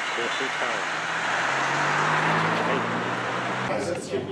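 Street traffic: a motor vehicle passing close by, its engine hum and road noise swelling to a peak about halfway through, then cut off abruptly just before the end.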